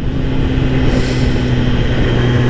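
Kawasaki Ninja ZX-10R inline-four engine holding a steady hum while cruising, under constant wind rush; a short swell of hiss comes about a second in.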